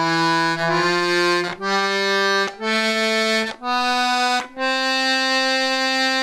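Small piano accordion played on its treble piano keys: a slow rising line of about six separate held notes, each about a second long with a short break between, the last held longer.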